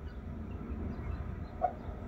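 Dry-erase marker writing on a whiteboard: faint scratching and squeaks over a low, steady room hum, with a short squeak about one and a half seconds in.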